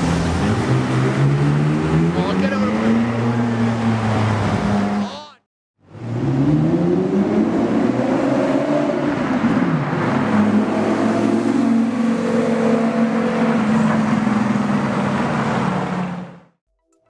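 Supercar engines accelerating hard on a city street, in two stretches split by a cut about five seconds in. Each time the engine note climbs in pitch as the car pulls away, then holds high.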